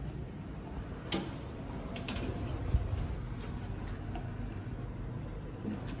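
A Nippon Elevator Manufacturing Elemic rope-traction passenger elevator arriving at the floor with no chime: a steady low machine hum, a few sharp clicks of relays and door gear, and a low thump a little under three seconds in as the car settles and its doors open.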